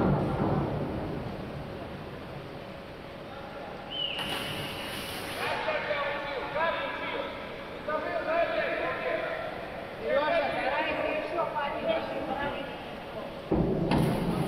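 Voices of people talking and calling across a large indoor pool hall. Near the end, a diver enters the water head-first with a sudden loud splash.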